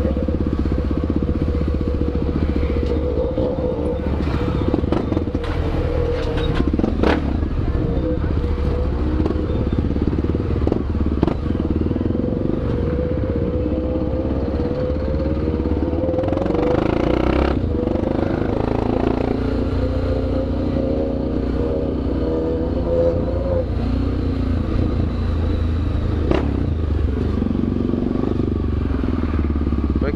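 Honda XRE 300's single-cylinder engine running at low revs close to the microphone as the bike moves slowly through traffic, its pitch rising and falling with the throttle. A few sharp clicks are heard along the way.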